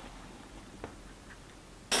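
Quiet room noise with a light click at the start and a fainter one about a second in, then a voice starting up near the end.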